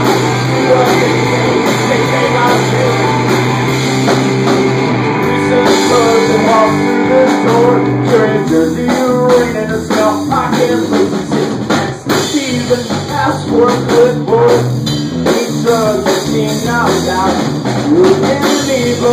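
Live rock band playing: two electric guitars and a drum kit, with a man singing into a microphone over them in the second half.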